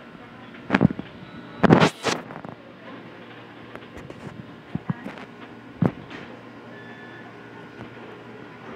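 Several sharp knocks and clatters over a steady room hum in a fast-food restaurant. The loudest comes as a quick cluster about two seconds in, with single knocks near one second, five seconds and six seconds.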